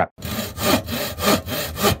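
Hand saw cutting through wood in quick, regular back-and-forth strokes.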